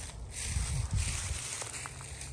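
Footsteps rustling and crunching through dry fallen leaves, with a few short crackles.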